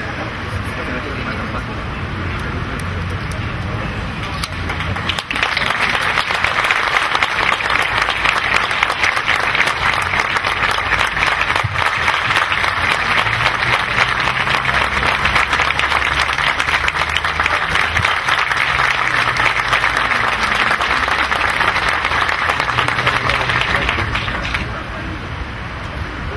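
Audience applauding. The clapping swells in about five seconds in and then goes on steadily.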